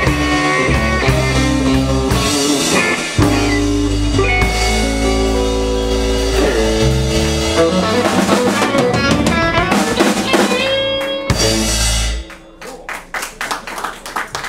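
Live electric blues band playing an instrumental passage: Fender Stratocaster electric guitars, bass guitar and drum kit. About twelve seconds in the band stops together, leaving a few faint guitar notes.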